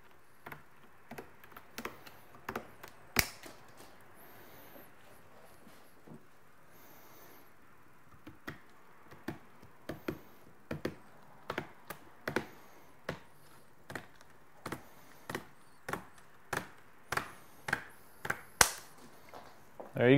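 Scissors snipping through gutter guard mesh, cutting it into strips: a series of short, sharp snips, a few scattered ones at first, then a steady run of about one and a half snips a second through the second half.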